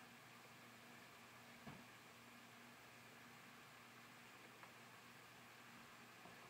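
Near silence: quiet room tone with steady faint hiss and a faint low hum, and one small click about a second and a half in.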